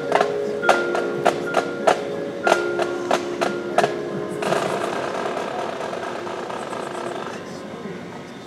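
High school marching band music: front-ensemble percussion playing sharp struck mallet notes over held tones, then about halfway through a softer held chord that slowly fades.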